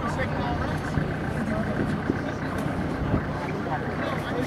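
Many voices chattering over a steady low machinery hum on a ship's deck.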